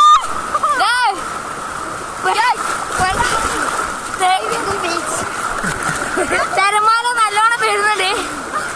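Waves washing and water splashing around swimmers in the sea, with boys' high-pitched calls and shouts breaking in several times, the longest burst about seven seconds in.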